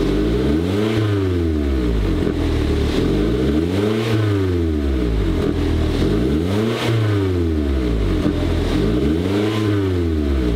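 A Toyota Auris four-cylinder engine is free-revved through an aftermarket valved exhaust with the exhaust valves closed. The pitch rises and falls four times, about three seconds apart.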